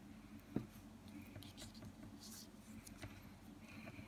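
Faint skin-on-skin rubbing and small clicks of fingers squeezing a pricked fingertip to draw blood, with one sharper click about half a second in, over a low steady hum.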